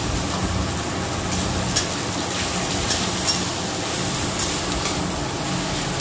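Masala with ginger-garlic paste frying in oil in a steel wok: steady sizzling, with a few faint pops.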